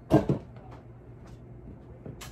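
A garment on a plastic clothes hanger being handled and set aside: a short, loud knock-and-rustle in two quick peaks, followed by a few faint ticks.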